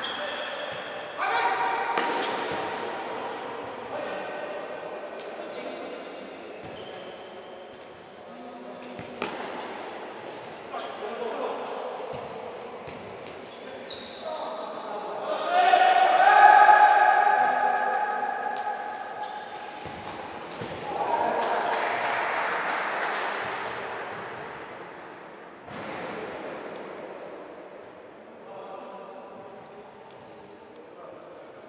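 Futsal ball being kicked and bouncing on a hard indoor court, echoing around a sports hall, with players shouting. The shouting is loudest about halfway through.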